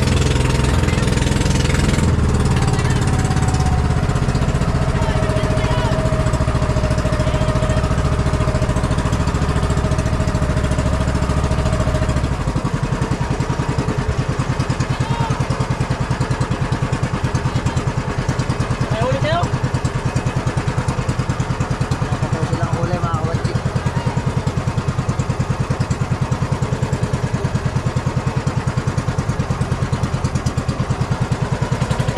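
Outrigger boat's inboard engine running steadily, then about twelve seconds in it drops to a slower, evenly pulsing idle as it is throttled back.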